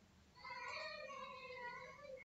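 A cat's single long, faint meow, starting about half a second in and held at a fairly steady pitch.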